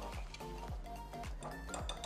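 Wire whisk clinking and scraping against a glass mixing bowl as oil and sugar are whisked, under background music with a steady beat about twice a second.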